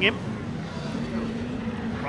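Engines of several classic rallycross cars racing together as a pack, a steady drone with one engine note held level through the second half.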